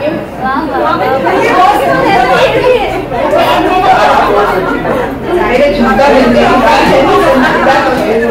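A roomful of women chattering over one another, many voices at once with laughter among them.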